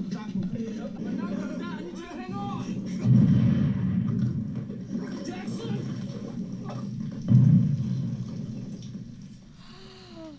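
War-drama soundtrack: soldiers' shouting voices, then two heavy explosions about four seconds apart, each a sudden low boom that dies away slowly, before the sound fades toward the end.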